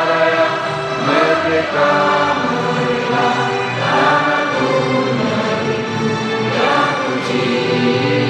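A choir singing a slow song together, with long held notes that change about once a second.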